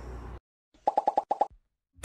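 Edited-in pop sound effect: a quick run of about six short pops, all at the same pitch, lasting about half a second, about a second in.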